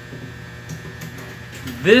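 Steady low electrical hum. A man's voice starts speaking near the end.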